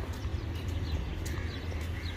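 Small birds chirping, short falling notes repeated every fraction of a second, over a steady low rumble of wind and handling noise.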